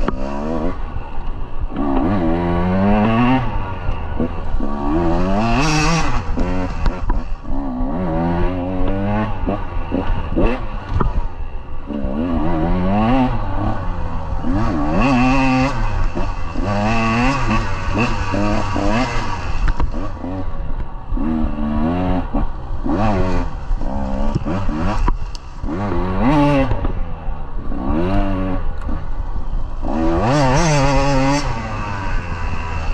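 KTM 150 two-stroke dirt bike engine revving up and falling back again and again as it is ridden, its pitch rising and dropping every second or two.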